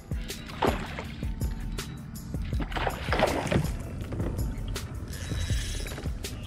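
Background music, over a steady low rumble.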